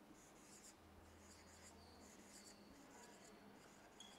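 Faint scratching strokes of a marker pen writing on a whiteboard, a series of short strokes one after another.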